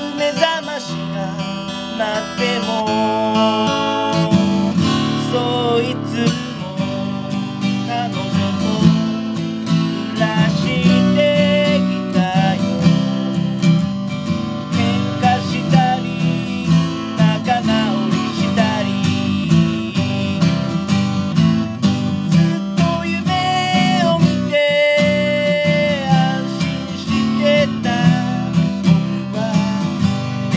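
Martin HD-28 dreadnought acoustic guitar strummed in steady chords, with a voice singing the melody in Japanese over it.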